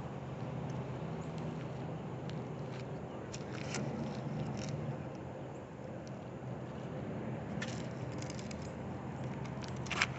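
Small clicks and scrapes of a spinning rod and reel being handled, scattered a few seconds in and then coming as a quick run in the last couple of seconds, over a steady low outdoor hum like distant traffic.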